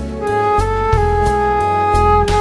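A band playing a song: a lead melody holding long notes, stepping up a little early on, over drums and bass guitar.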